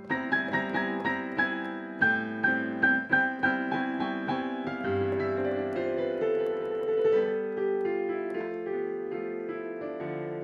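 Piano being improvised: quick notes, with a high note struck over and over, above a held chord, then from about halfway slower, sustained chords over a low bass note.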